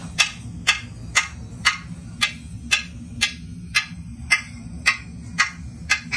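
A bar striking a freshly cast metal centrifugal pump body about twice a second, a dozen evenly spaced blows that each ring briefly, knocking the moulding sand out of the casting.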